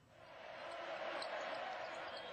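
A rushing, hiss-like wash of noise that swells in over about half a second and then holds steady.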